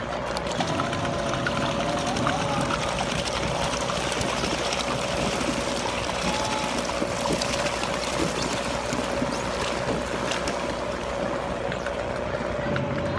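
Pool water churning and trickling as the paddle wheels of small hand-cranked paddle boats turn, with a steady hum running under it.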